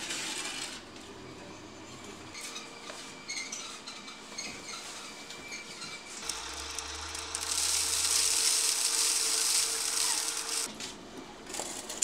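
Conveyor belt running with excavated soil, a mechanical rattle with small clinks and a low motor hum. About seven seconds in, a loud hiss joins for about three seconds and then stops.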